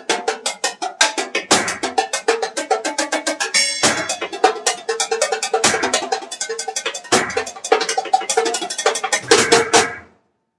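Fast, driving percussion rhythm: a rapid, even run of sharp clicks and knocks over a repeating mid-pitched note pattern, with a heavier low hit every second or two. It stops suddenly at the very end.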